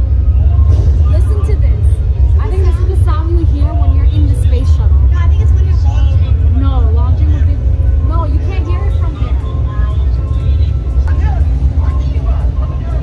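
A deep, steady rumble played through an exhibit's sound system to simulate a rocket launch, strong enough to be felt as vibration, with voices and music over it.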